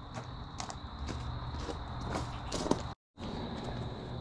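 Quiet outdoor ambience: crickets trilling steadily over a low rumble, with a few light knocks. The sound cuts out for an instant about three seconds in.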